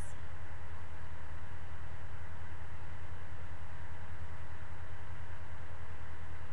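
Steady low electrical hum with an even hiss and a faint thin tone, unchanging throughout, with no footsteps or other events.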